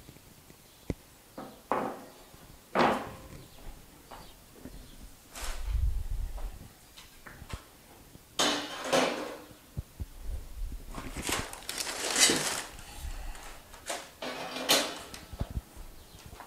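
Steel expanded-metal smoker grates and bracket rails being handled and set down on a table: irregular metal clanks, scrapes and rattles, with dull thuds, the loudest rattle about three-quarters of the way through.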